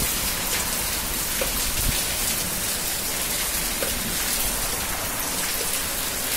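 Heavy rain falling steadily onto flooded ground and a wet tiled floor, an even hiss of drops splashing into standing water.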